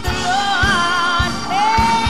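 Gospel music: female vocalists singing a melody with vibrato over a band with a steady beat.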